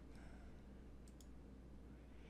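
Near silence over a steady low electrical hum, broken by a faint computer mouse click, two quick ticks close together, a little over a second in.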